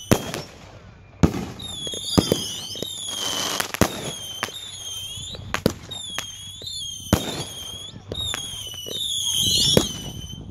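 Consumer aerial fireworks going off in quick, irregular succession: about a dozen sharp bangs of shells bursting overhead. Short, falling high whistles recur between the bangs.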